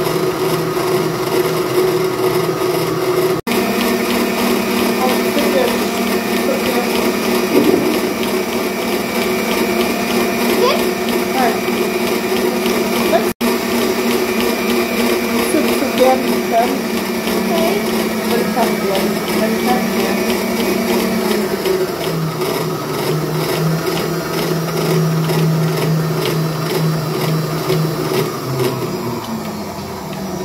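Electric stand mixer running steadily at speed, whipping egg whites for a sponge cake. Its motor hum drops to a lower pitch about two-thirds of the way through.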